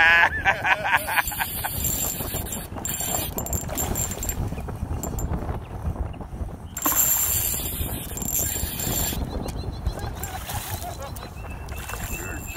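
Wind rumbling and handling noise on a phone microphone, with a brief voice in the first second.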